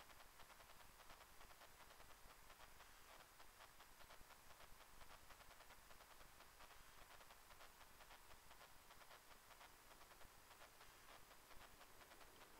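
Near silence: a faint steady hiss.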